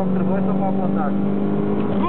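Toyota MR2 SW20's mid-mounted four-cylinder engine running at high, steady revs, heard from inside the cabin, with a voice over it.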